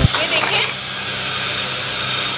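Electric hand mixer (beater) running steadily at a constant speed, its beaters whisking mayonnaise in a shallow plate.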